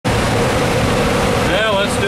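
Steady cockpit noise of an Airbus A300-600 on APU power, engines not yet started: the constant rush of the running APU and the air-conditioning airflow, with a steady hum under it. A man starts speaking about a second and a half in.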